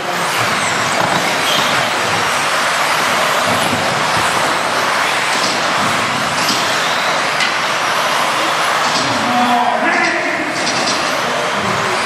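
A pack of 1/10-scale 2WD modified-class electric RC buggies racing together on carpet, their motors and tyres making a steady high rush with no single engine note.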